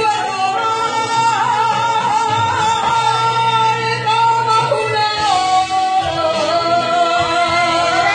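A woman singing a Spanish-language ballad live into a handheld microphone over accompanying music, holding long, drawn-out notes.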